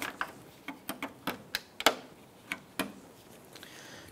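Plastic push-pin clip being pried up and out with a trim tool: a string of short, sharp plastic clicks and snaps, the loudest a little before the middle.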